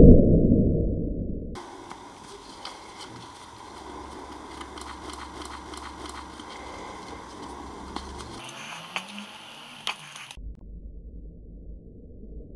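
Paper being crumpled, folded and torn by hand, a faint crinkling with many small irregular crackles, after a loud muffled low sound that dies away in the first second and a half.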